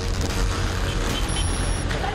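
Motorcycle engine running with the rush of road and wind noise, heard from on board a moving motorbike during a chase, with a brief thin high tone past the middle.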